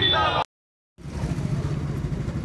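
Voices cut off abruptly, followed by a brief dead-silent gap. Then the steady low rumble of motorcycle engines idling starts up.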